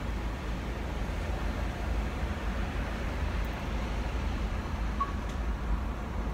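Car engine idling, heard from inside the cabin as a steady low rumble with a faint hiss of outside noise.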